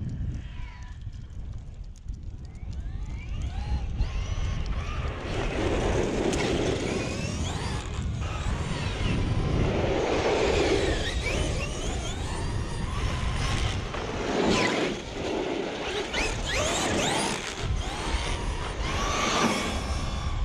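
Traxxas XRT 8S brushless RC truck driving on asphalt in repeated throttle bursts: its motor and drivetrain whine rises and falls in pitch several times, with tyre noise on the pavement.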